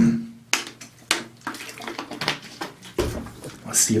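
A handful of short clicks and knocks from a plastic water bottle and a pH test strip being handled, with a brief low rumble about three seconds in.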